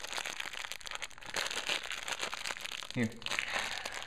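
Thin clear plastic parts bag being handled and pulled open, crinkling with a dense run of small crackles.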